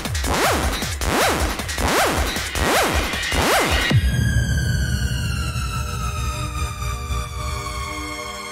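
Electronic dance music played through DJ decks: a repeating sweeping synth pattern over heavy bass about every three-quarters of a second, which cuts out abruptly about halfway through, leaving a sustained, slowly falling synth tone over the bass.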